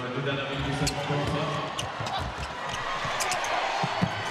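A handball bouncing repeatedly on an indoor court floor during play, over steady arena crowd noise, with a few sharp high squeaks or clicks.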